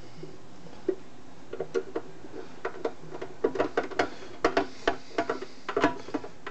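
Hand screwdriver driving a short machine screw into the case's upper base: a run of irregular small clicks and ticks that starts about a second in and grows busier through the second half. It is being snugged gently, since the thread is short and strips easily.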